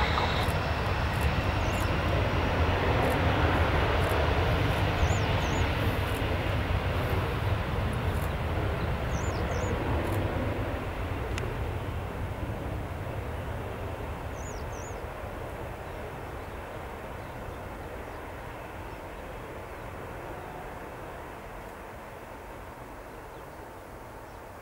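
Boeing 737-400's CFM56-3 turbofan engines at takeoff power during the takeoff roll: a high fan whine that fades about half a second in, then steady jet engine noise that grows gradually fainter as the aircraft accelerates away.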